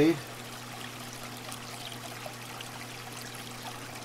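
A steady trickle of circulating aquarium water, with a low, steady hum underneath.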